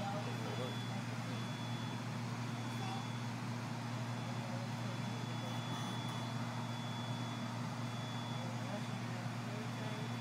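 Steady low hum from a stopped light rail car's onboard equipment and ventilation, with a thin high-pitched whine over it.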